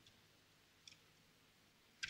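Near silence, with a faint single click a little under a second in.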